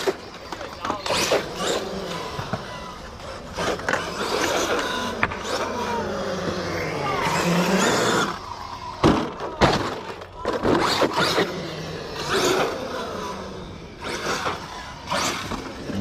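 Arrma 8S brushless RC truck driving hard on skatepark concrete: the electric motor whines, rising and falling in pitch with the throttle, over tyre scrub and repeated sharp knocks and clatters as the truck bounces and hits the ramps and bowl.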